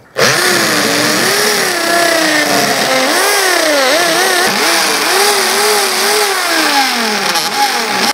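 Corded electric drill boring holes through the plywood edge of a cloth-covered round shield. Its motor whine wavers up and down in pitch as the bit bites and frees, starting suddenly and stopping just at the end.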